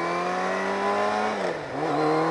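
Motorcycle engine running under way, its note creeping up in pitch, dipping briefly about one and a half seconds in, then rising again.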